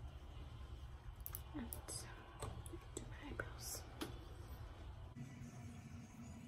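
Faint scattered clicks and small handling sounds over a low steady hum.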